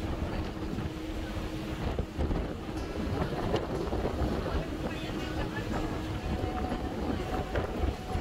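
Wind buffeting the microphone on the open deck of a moving harbour ferry, over the ferry's engine and the rush of water. The noise is gusty, with a faint steady engine tone under it.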